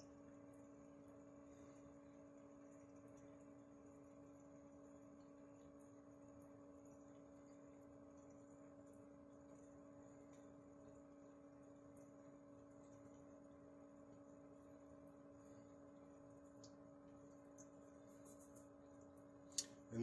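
Near silence: room tone with a faint, steady hum and a few faint ticks.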